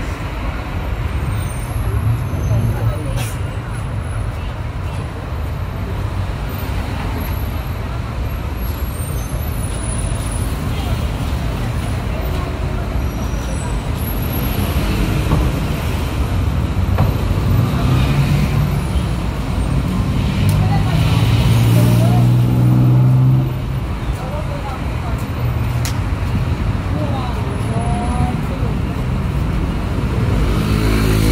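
Busy city road traffic beside a sidewalk: a continuous mix of passing cars, motorcycles and buses. A heavy vehicle's engine rises in pitch and grows loudest about twenty seconds in, then cuts off suddenly a few seconds later.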